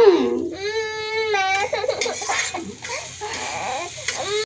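Toddler crying: a short rising-and-falling cry at the start, then a held wail about half a second in that lasts about a second, followed by quieter broken sounds.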